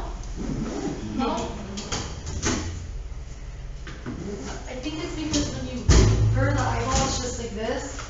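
Indistinct voices of people talking, with a single loud thump about six seconds in.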